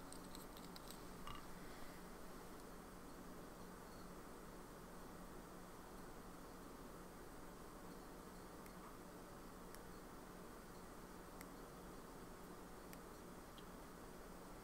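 Near silence: a steady low room hum, with a few faint ticks as drops of ink are let fall onto a paper card to make splat spots.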